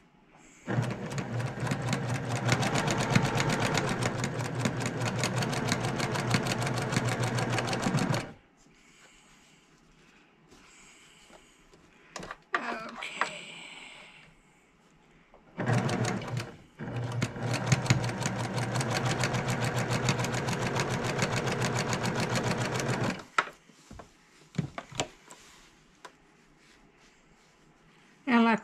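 Electric sewing machine stitching seams through quilt fabric in two steady runs of about seven to eight seconds each, with an even rapid rhythm of needle strokes. Between the runs and after them come quieter sounds of the fabric being repositioned and a few light clicks.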